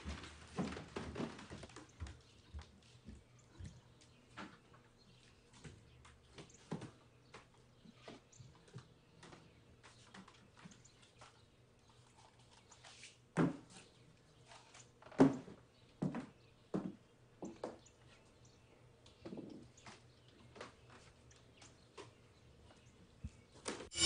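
Small movement sounds in a quiet room: scattered light taps, knocks and rustles of someone moving about and handling things, with two louder thumps about 13 and 15 seconds in.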